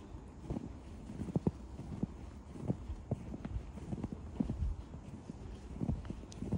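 Footsteps walking through fresh snow, a steady run of short strokes at about two steps a second.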